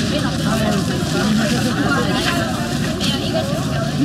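Voices and crowd chatter at a busy night-market food stall, over a steady low background rumble.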